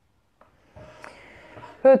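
Near silence, then a faint steady hiss of room noise, ending with one short spoken word.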